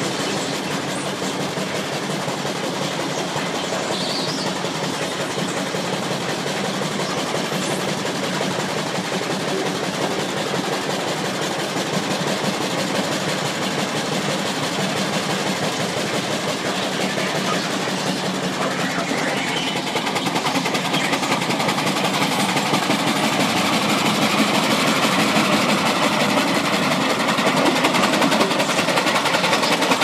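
Albaret steam roller working under load as it drags a pull sled, its steam engine running with a fast, even beat. The sound grows somewhat louder after about twenty seconds.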